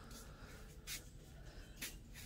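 Two brief, faint scraping rustles about a second apart over a quiet room hum, as clothes on plastic hangers are brushed and moved along a rack.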